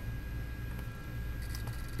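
Open hard drive running, with a steady low hum and faint whine from its spinning platters and a few faint ticks near the end. The head is contaminated with fingerprint residue and the platter is scratched, so the drive keeps trying but reads nothing.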